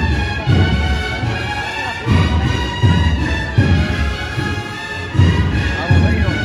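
Brass-and-drum procession band playing a march, with heavy bass-drum beats under long held brass notes.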